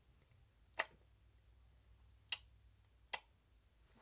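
Three short, sharp clicks at uneven spacing, about a second or more apart, given as the sound of a shovel chopping off a snake's head.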